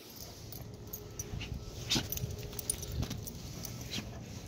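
Leashed dogs moving about: quiet jingling of metal leash clips with scattered soft knocks and rustles.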